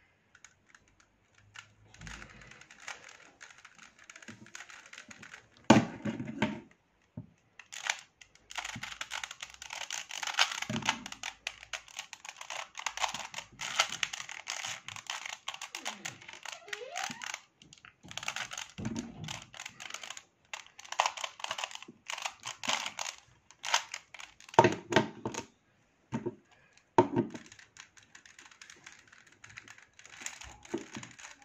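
Plastic 3x3 puzzle cubes being turned fast one-handed: dense runs of quick clicks and rattles from the layers, with a few short pauses. A few louder knocks stand out, about six seconds in and twice near the end.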